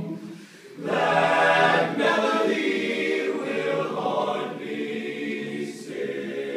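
Men's barbershop chorus singing a cappella in close harmony. A held chord breaks off briefly just after the start, then a loud full chord comes in about a second in and the singing carries on.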